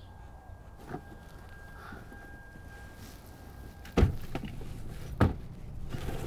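Two doors of a Toyota SUV slammed shut, one about four seconds in and the second a little over a second later, over a low steady rumble. A faint, high, steady tone stops at the first slam.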